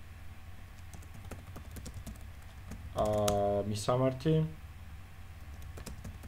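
Typing on a computer keyboard: quick, irregular key clicks as code is entered.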